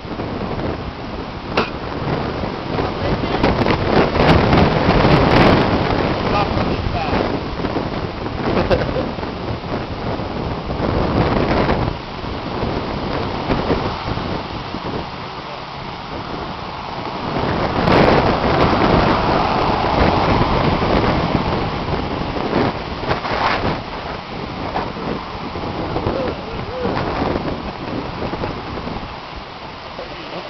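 Strong gusty wind rushing over the camera microphone, swelling and easing in gusts, loudest a few seconds in and again just before halfway.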